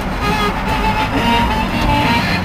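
Music playing on the radio over the steady drone of a Suburban's engine and road noise, heard inside the cab.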